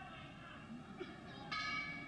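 Boxing ring bell struck once about a second and a half in, a brief bright ring of several tones, marking the start of the next round.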